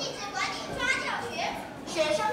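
Children's voices: children speaking and chattering.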